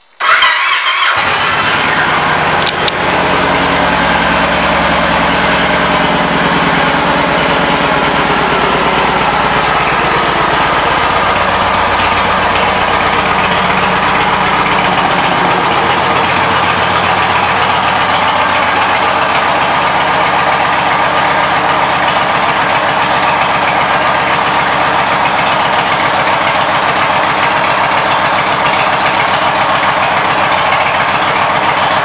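2009 Yamaha Raider's V-twin engine with aftermarket Cobra exhaust pipes starting right at the outset, then idling steadily. About halfway through the sound loses some of its deepest bass.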